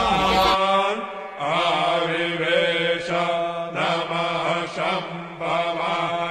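A voice chanting Sanskrit Vedic mantras for a havan fire offering, in phrases broken by short pauses, over a steady low drone.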